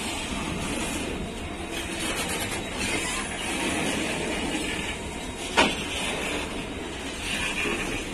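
Loaded coal freight wagons rolling past at close range, a steady rumble and rattle of wheels on rail, with one sharp clank about five and a half seconds in.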